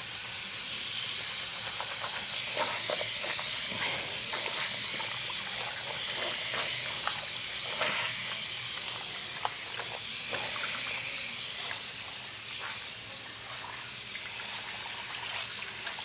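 Water running from a bathroom tap into a washbasin in a steady hiss, with splashes and small knocks of someone washing at the basin, most of them in the first half.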